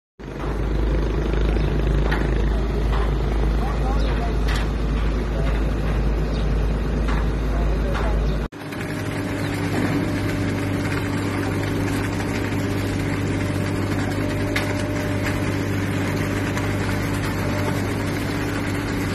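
A heavy machine's engine runs steadily. There is a deep rumble at first, then a brief dropout about halfway through, after which the engine hum is steadier.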